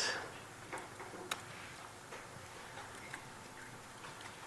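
A few faint keystroke clicks on a laptop keyboard as a line of code is typed, sparse and irregular, the sharpest about a second in, over low room hiss.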